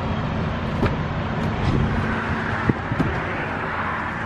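Steady road traffic noise, with a few faint clicks and knocks of handling around the car door.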